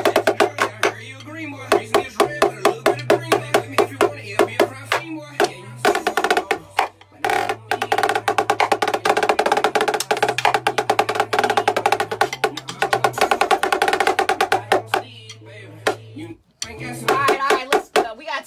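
Snare drums played with sticks in fast, dense strokes and rolls. Underneath is a backing music track with a low bass line that steps from note to note. The drumming breaks off briefly about seven seconds in and again near the end.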